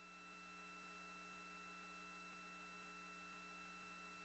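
Faint, steady electrical hum and hiss from an open radio communications loop, with several fixed tones and no other sound.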